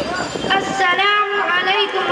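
A girl's voice starts about half a second in, chanting a Quran recitation (qirat) in long melodic phrases whose pitch glides and is held.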